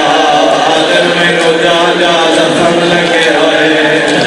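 A man's voice chanting in a drawn-out, melodic way with long held notes: an elegiac recitation mourning the martyrdom of Imam Hussain.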